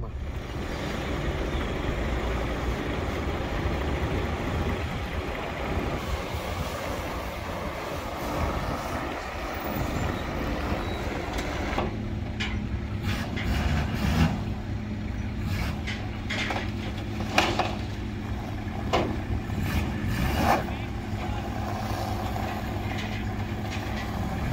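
Vehicle engines idling with a steady low hum while a Toyota Land Cruiser is driven off a car-transporter trailer down its metal loading ramps, with several sharp knocks and clunks in the second half. The first half is a steady rushing noise.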